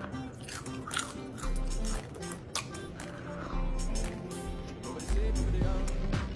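Background music, with crunching bites and chewing of crispy bacon over it.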